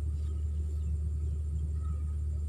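A steady low rumble with no change in level, with a faint thin steady tone higher up.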